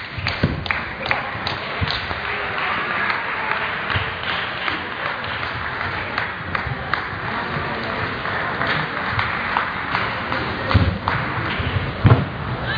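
Table tennis ball clicking back and forth off the bats and table in a rally, which ends about two seconds in. After that, scattered ball clicks from other tables sound over the murmur of a sports hall, with a few heavier thumps near the end.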